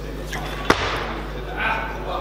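A single sharp smack about two thirds of a second in, as a weightlifter drives an 88 kg barbell from the hips into the overhead catch of a snatch. Voices call out afterwards.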